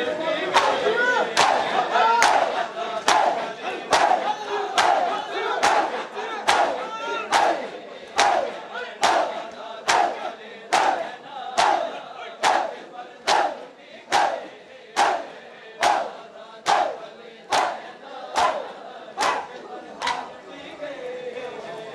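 A crowd of men doing hand matam: bare chests struck with open palms in unison, one sharp slap a little more than once a second. In the first half the crowd's shouts and chanting run between the slaps, then fade, leaving mostly the slaps.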